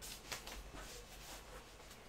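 Soft, quick swishing sounds from a person exercising on a yoga mat, about four in the first second and a half, then faint.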